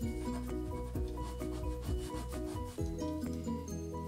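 A coin scraping the scratch-off coating of a paper lottery ticket in quick repeated strokes, over background music.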